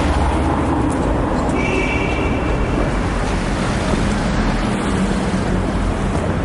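Steady street traffic noise with vehicle engines running, with a brief thin high whine starting about a second and a half in and lasting over a second.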